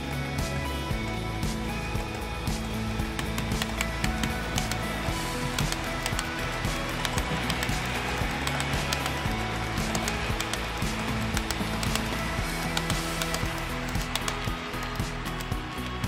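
Background music with guitar, mixed with the rolling running noise of a 13 mm gauge model freight train passing close by. The rolling is loudest around the middle.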